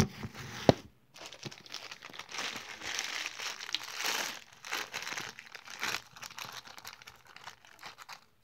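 A sharp knock, a second knock under a second later, then several seconds of close, dense crinkling and crackling right against the microphone.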